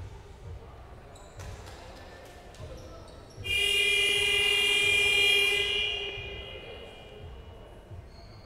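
Basketball scoreboard horn sounding once for about two seconds, a steady buzzy tone that starts abruptly and then dies away in the hall, the signal that a timeout or break is over.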